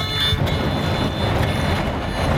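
Wind buffeting the microphone in a loud, uneven low rumble that sets in about half a second in, with the guitalele strumming faintly beneath it.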